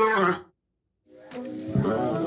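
Cartoon soundtrack: a loud, pitched, voice-like cry cuts off sharply about half a second in. After half a second of silence, music comes back in with a deep hit.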